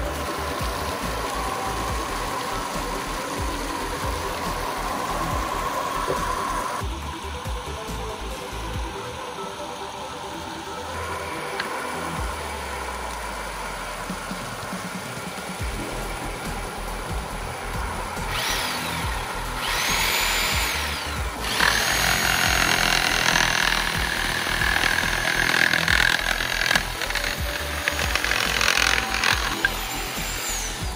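Background music with a steady beat; in the second half a handheld electric jigsaw's motor is triggered, rising and falling twice in quick bursts, then runs steadily with a high whine for about eight seconds.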